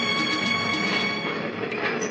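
Film soundtrack: held string notes of the background score, fading, over the rumbling noise of a train at a station, with a couple of sharp knocks near the end.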